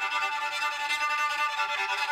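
Homemade cigar box violin being bowed, playing steady, sustained notes.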